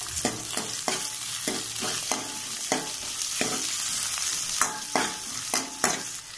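Shallots and garlic frying in hot oil with cumin seeds in an aluminium kadai: a steady sizzle, with a steel ladle scraping and clicking against the pan at irregular intervals as it stirs them.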